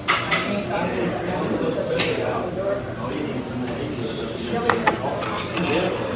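Restaurant dining-room chatter in the background, with scattered sharp clinks of dishes and cutlery: a couple just after the start, one about two seconds in, and a cluster in the last second and a half.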